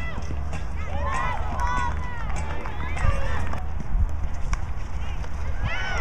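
Field hockey players shouting short calls to each other across the pitch, with a few sharp clicks of stick on ball over a steady low outdoor rumble. The shouting thickens and grows louder near the end as play reaches the goal mouth.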